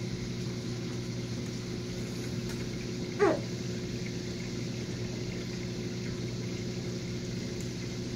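Steady hum of aquarium equipment, several fixed low tones over a faint water hiss. About three seconds in, a brief squeak falls sharply in pitch.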